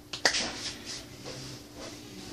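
A single sharp snap from the hands about a quarter second in, followed by a few fainter clicks.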